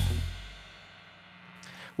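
The last chord of a rock trio (electric guitar, bass guitar and drum kit with cymbals) fading out over about a second. It leaves faint room tone with a low steady hum.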